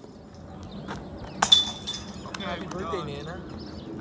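A flying disc hits a metal disc golf basket about one and a half seconds in, a sharp clang that rings briefly. A person's voice calls out, rising and falling, shortly after.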